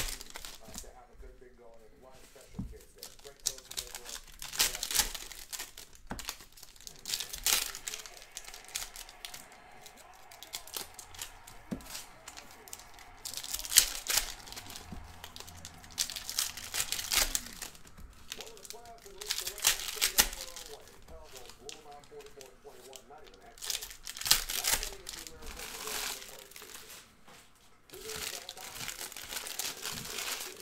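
Trading-card pack wrappers crinkling and tearing as football card packs are ripped open by hand. It comes in separate bursts every few seconds, some short and sharp, a few lasting a second or two.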